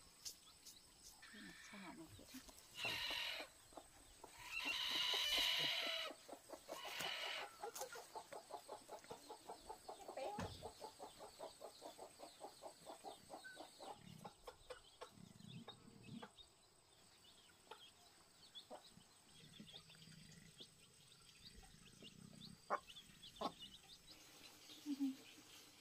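Chickens: loud calls around three and five seconds in, then a long run of quick, even clucks.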